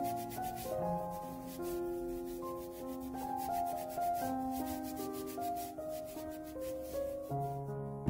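Cotton work gloves rubbing the skin of a quince, a run of quick scratchy scrubbing strokes. Soft background music with held, piano-like notes plays along.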